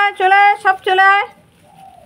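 A high voice calling to puppies in a repeated sing-song "chole, chole" ("come, come"). There are four quick calls, then it stops about a second and a half in.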